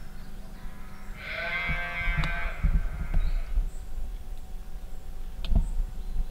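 A sheep bleating once: one long, wavering call lasting nearly two seconds. A few low thumps follow, and there is a sharp click near the end.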